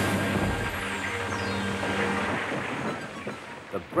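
Crash of a runaway train smashing a brake van to pieces. A loud hit at the start is followed by a long rattling, noisy aftermath that fades over about three seconds, under orchestral music.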